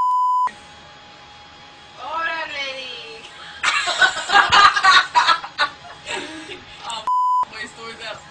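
Censor bleep: a steady high tone replacing the audio, cutting off about half a second in and sounding again briefly about a second before the end. Between the bleeps come raised voices, loudest in a noisy stretch around the middle.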